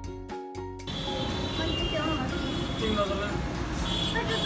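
Background music for about the first second, then a sudden cut to busy background noise with a steady low hum and faint voices.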